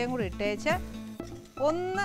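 A woman's voice with strongly gliding pitch over background music with a steady low drone.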